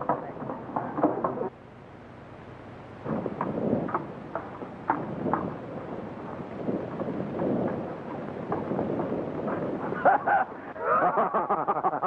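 Hoofbeats of a horse and rider approaching on dirt, uneven and irregular, with a man's voice calling out near the end.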